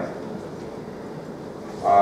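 Pause in a man's talk over a handheld microphone: a steady low hiss, then near the end a brief drawn-out vocal sound, like a held hesitation, from the man at the microphone.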